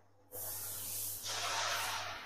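A steady hiss of rushing air that starts about a third of a second in, then turns louder and lower-pitched about a second in.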